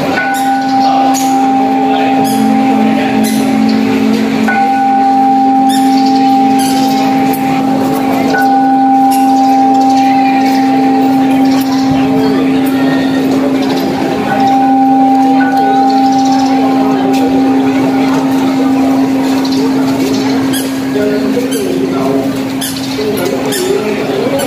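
Congregation chanting prayers together during a temple ceremony, over a steady, unbroken low tone, with scattered sharp strikes.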